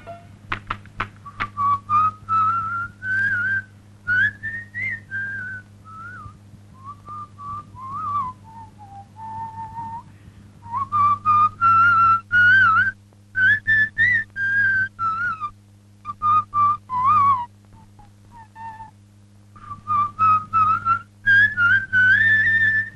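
Whistling in short phrases that glide up and down, with pauses between them, over a steady low hum. A few sharp clicks come just after the start.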